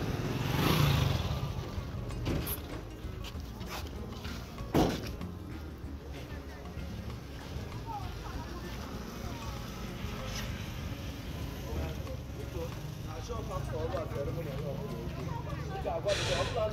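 A motorcycle engine running close by, loudest in the first second or so and then fading. After that comes outdoor street background: a low steady rumble with faint distant voices, and a single sharp knock about five seconds in.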